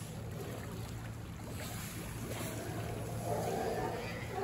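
Steady low rumble of wind and sea water around the wharf, with a faint mid-pitched sound near the end.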